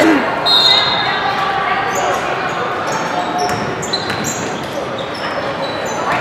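Basketball game sounds in a gym: spectators chattering, a basketball bouncing on the hardwood floor, and short high squeaks from sneakers on the court.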